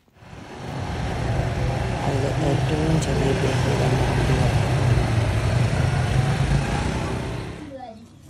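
Small Yamaha quad bike (ATV) engine running steadily, with voices over it; the sound fades in over the first second and cuts off just before the end.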